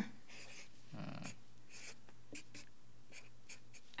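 Black felt-tip marker drawing on paper: a faint series of short strokes scratching across the sheet.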